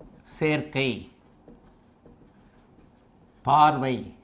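Marker pen writing on a whiteboard, the strokes faint, with a man's voice speaking briefly near the start and again near the end.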